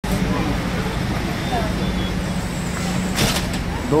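Outdoor street noise: a steady low traffic rumble with a held engine-like hum and faint voices, and a brief rustle about three seconds in.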